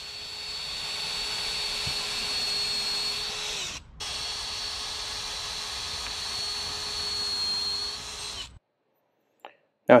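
Makita 18V cordless drill driving a quarter-inch bit down through the old desktop into the solid oak top beneath. It runs as a steady whine in two long runs, with a brief stop about four seconds in, and cuts off a little over eight seconds in.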